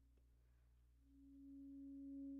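Alto saxophone: a short pause, then about a second in a soft held note enters and swells, nearly a pure tone.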